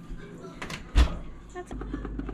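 Oven door being closed, shutting with one loud thud about a second in, followed by a steady low hum.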